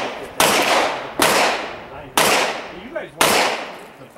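Four pistol shots about a second apart, each trailing off in a long echo.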